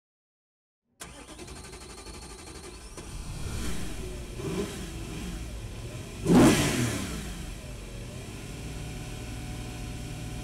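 BMW car engine sound effect starting suddenly about a second in after a moment of silence. The engine runs, swells, and peaks in a short, loud rush with its pitch sweeping about six seconds in, then settles into a steady running note.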